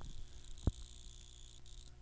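Faint background noise of the recording in a pause between sentences: a steady low hum and a thin high-pitched whine, with one soft click a little under a second in.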